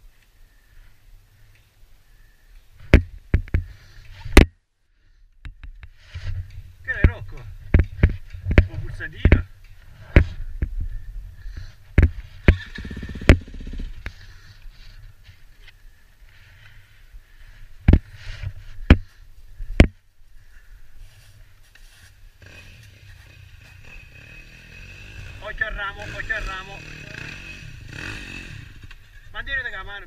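Muffled, unclear voices over a low rumble, broken by a series of sharp knocks and bumps in several clusters.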